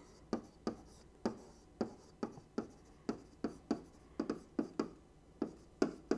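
A stylus handwriting on a tablet surface: a string of short, faint taps and scratches, about three a second, as the letters are written.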